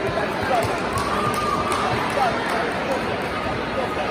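Steady babble of many voices in a large hall, with scattered distant calls and shouts rising out of it.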